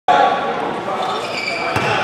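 Players and spectators talking in an echoing gymnasium, with one sharp knock about three-quarters of the way through, like a basketball hitting the court.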